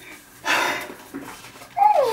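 A woman's short breathy exhale about half a second in, with a voice starting near the end.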